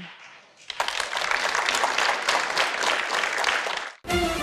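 Studio audience applauding, beginning about a second in and cut off abruptly just before the end.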